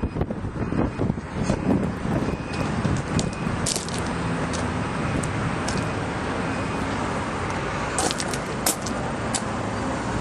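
Steady roar of highway traffic with semi trucks passing, a low engine drone under the road noise. A few sharp clicks come through near the end.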